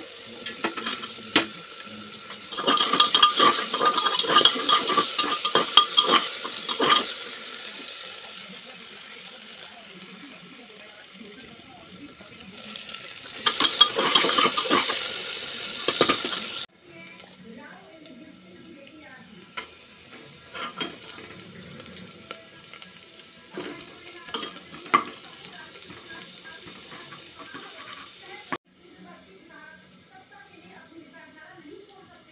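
Chopped potatoes, onions and peanuts frying in mustard oil in an open aluminium pressure-cooker pot, sizzling loudly in two spells while a metal slotted spatula stirs and scrapes against the pot. After that come quieter scattered clinks of metal utensils.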